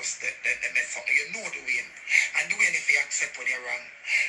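A person talking, played back through a phone's small speaker, so the voice sounds thin.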